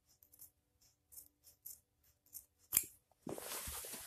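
Scissors cutting through a dense non-woven felt damping mat: a few short, faint snips, then a sharper knock a little before three seconds in and about a second of rustling as the cut felt is handled.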